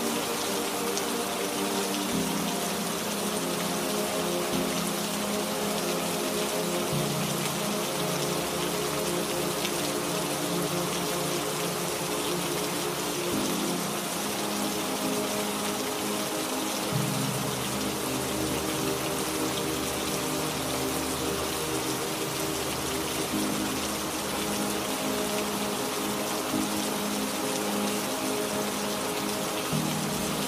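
Steady rainfall with soft ambient music over it: long held chords that change every few seconds.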